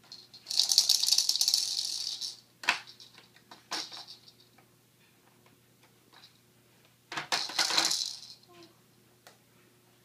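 Plastic baby activity toy handled by a toddler, its beads rattling in a burst of about two seconds beginning half a second in and again in a shorter burst about seven seconds in. A few sharp plastic knocks come in between.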